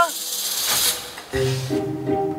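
A short rushing whoosh, the kind used as a scene-transition effect, lasting about a second. Then background music comes in about a second and a half in, with a steady bass and repeating light notes.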